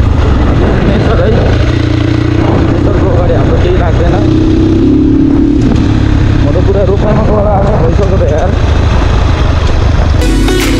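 Dirt bike engine running at a steady cruising speed on a gravel track, with a constant low rumble underneath. A voice wavers faintly over it about halfway through.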